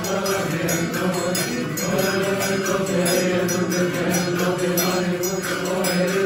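Male voices chanting a Coptic liturgical hymn in long, steady held notes, kept in time by a steady beat of hand cymbals and triangle.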